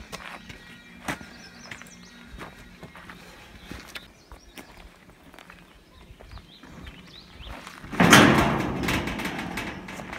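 A heavy timber-frame rafter, a freshly cut wooden beam, is carried with footsteps on dirt and then set down on the ground, landing with a loud thump about eight seconds in, followed by scraping and knocking as it settles.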